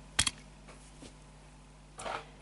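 A small diecast toy car set down on a hard display surface: one short double click about a fifth of a second in, then only faint room noise.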